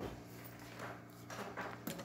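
Faint steady electrical hum, with a light click near the start and another near the end.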